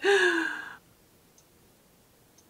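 A woman's voiced sigh, falling slowly in pitch and fading out within the first second, followed by quiet with a faint tick.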